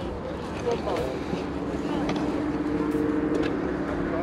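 Background voices of an outdoor market crowd, with a steady mechanical hum, like an engine running, that comes in about a second in.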